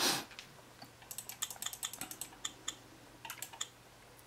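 A brief rush of noise right at the start, the loudest sound, then a rapid run of sharp computer-mouse button clicks in quick clusters, repeatedly clicking an on-screen item.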